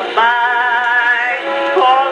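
An Edison Diamond Disc phonograph playing a 1921 acoustic jazz-blues recording: a melody line held on long notes with vibrato over the band. The sound is thin, with no deep bass.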